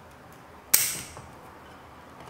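Bonsai scissors snipping a shoot on a shinpaku juniper: one sharp, crisp cut about three-quarters of a second in, then a faint click.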